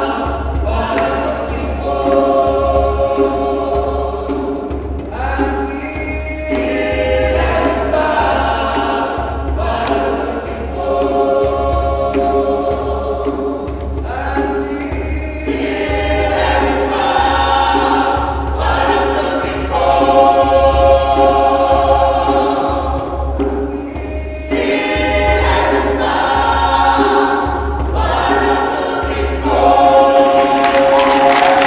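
South African gospel choir singing in harmony, in phrases a few seconds long, with a low pulse underneath.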